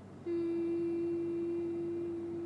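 A single steady tone at one unchanging pitch starts about a quarter of a second in and holds evenly.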